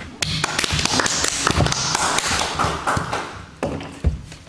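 Audience applause: a burst of clapping from a small group in a room that starts just after the beginning and dies away near the end.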